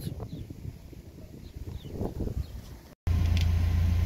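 Quiet outdoor background, then after a sudden cut about three seconds in, a pickup truck engine idling with a steady low hum.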